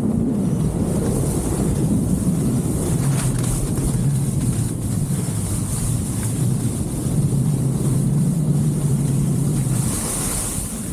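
Skis running fast over slushy spring snow, a steady hiss under a low rumble of wind buffeting the camera's microphone. Near the end the skis turn sideways and the hiss grows brighter as they skid.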